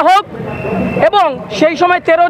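A man speaking into press microphones, with a steady low hum of street traffic heard in the pause between his phrases.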